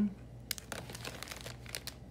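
Clear plastic packaging crinkling and crackling as packaged scent circles are handled and set down, a run of sharp crackles lasting about a second and a half.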